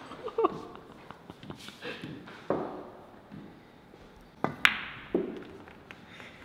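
Billiard balls knocking on a pool table during a shot: a few sharp clicks, with two close together about four and a half seconds in.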